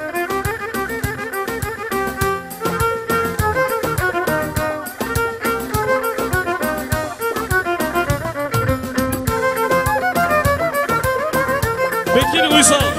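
Kabak kemane, the Turkish gourd spike fiddle, bowed in a lively folk tune of quick, short notes.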